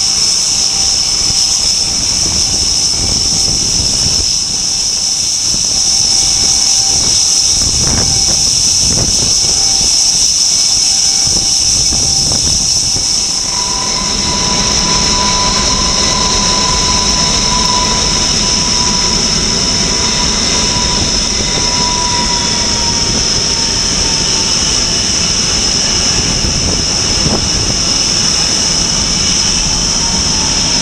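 Tornado GR4's RB199 jet engines running on the ground with a steady whine. About 13 seconds in, the sound changes to an RAF VC-10's four rear-mounted Rolls-Royce Conway jet engines running, a heavier rumble with a high whine that slowly falls in pitch.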